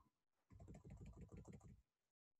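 Faint computer keyboard typing: a quick run of keystrokes starting about half a second in and lasting just over a second.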